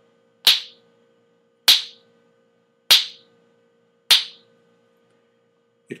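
Finger snapping: four crisp snaps at a steady rate, about one every 1.2 seconds.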